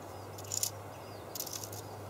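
Quiet outdoor background: a faint steady low hum with a few short, very high chirps or buzzes.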